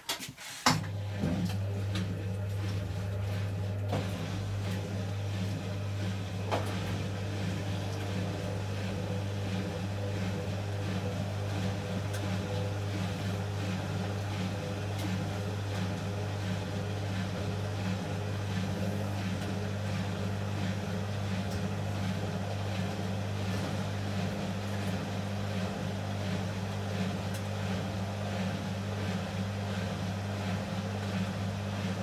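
A row of Hotpoint washing machines started together on a spin-only programme, their motors and drums running with a steady low hum. A few clicks come as they start, about a second in.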